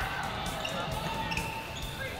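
Game sound in a basketball gym: a ball bouncing on the hardwood court amid repeated low thumps, with voices in the background.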